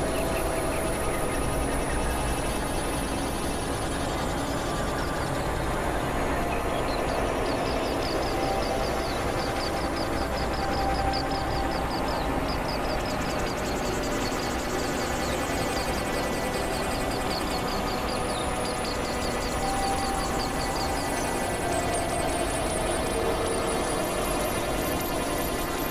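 Dense layered experimental electronic music: several droning, noisy tracks playing over one another at a steady level, with a run of short, evenly repeated high chirps in the middle.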